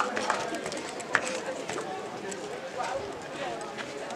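Boots stamping and knocking in a police marching drill, irregular sharp footfalls with one loud knock about a second in, over the chatter of a crowd.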